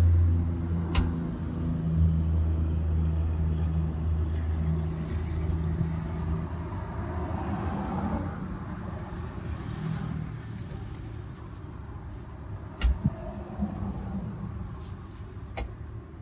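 A motor vehicle's engine running close by with a steady low hum, over street traffic noise; the hum fades out after about six seconds. A few sharp clicks sound over the fainter noise that remains.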